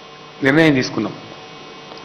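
Steady electrical mains hum, a low buzz with many even overtones, running under a pause in a man's speech into a microphone. A short spoken phrase cuts in about half a second in.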